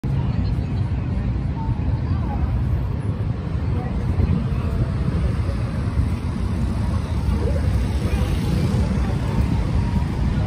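Steady low rumble of street ambience with people talking in the background.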